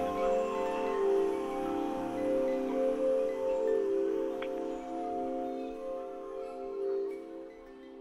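Ambient drone music of layered, sustained bell tones that swell and overlap, slowly fading in the last few seconds.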